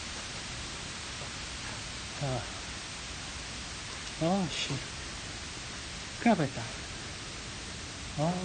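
Steady hiss of rain falling during a downpour, with a man making three short wordless vocal sounds, about two, four and six seconds in.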